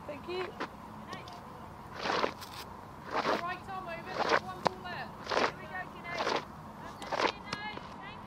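Cricket-ground ambience from the field microphones: faint distant voices of players and spectators over a steady low hum. From about two seconds in there is a run of short, sharp sounds roughly once a second.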